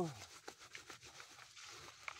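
Hands rubbing wet sand and gravel around in a window-screen classifier on a bucket: a faint gritty scraping with a few small clicks of stones, as the fines are worked through the screen.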